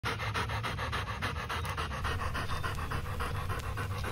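American pit bull terrier panting rapidly with its mouth open, an even run of about five breaths a second.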